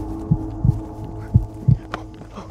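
Dull low thumps coming in pairs, about once a second, over a steady low hum.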